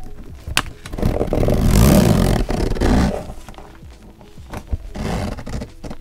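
Hands handling a fabric-covered hard-shell zip case close to the microphone. A long, rough scraping rub starts about a second in and lasts about two seconds, followed by a shorter, weaker one near the end, over faint lo-fi music.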